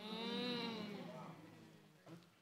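A person's long hummed "mmm", held for about a second and a half. Its pitch rises slightly, then sinks as it fades away.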